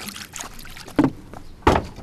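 Two sharp wooden knocks about 0.7 s apart, the second louder and deeper, as wooden double doors are pushed open.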